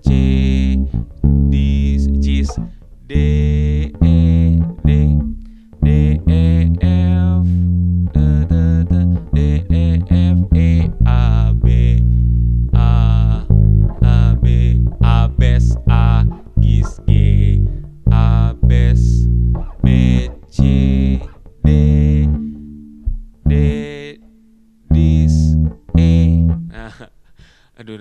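Five-string electric bass (Pedulla MVP5) playing the chorus bass line in F as a run of separate plucked notes, some ringing longer, with short gaps between phrases.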